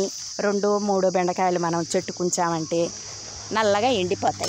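Steady, high-pitched chirring of crickets throughout, under a woman's voice speaking for most of the time.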